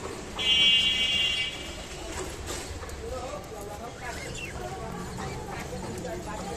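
Caged budgerigars chattering with soft chirps and warbles while they feed. About half a second in, a loud, steady buzzing tone sounds for about a second.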